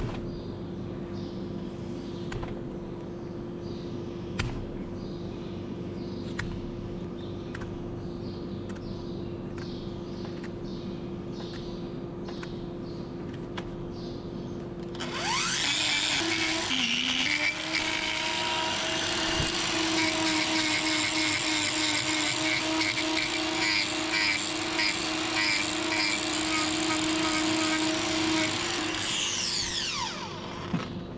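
Angle grinder running against a cow's hoof horn. For the first half it runs lightly with faint regular ticks, then about halfway it bites in and grinds hard and much louder, its motor pitch dipping briefly under the load. Near the end it stops and winds down with a falling whine.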